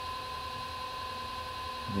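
Electric potter's wheel spinning at a steady speed: a constant whine over a low hum.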